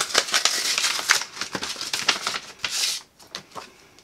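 A small paper envelope and the paper inside it rustling and crackling as they are handled and pulled apart, busy for about three seconds, then a few faint rustles.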